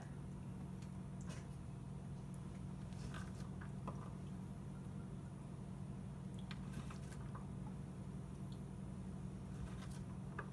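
Faint, scattered clicks and snaps of fresh green beans being broken and trimmed by hand over a wooden cutting board, heard over a steady low hum.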